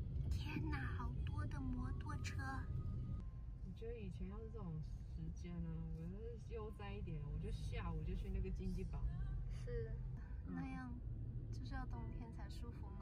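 Steady low rumble of scooter and car engines in slow traffic, with people's voices talking over it.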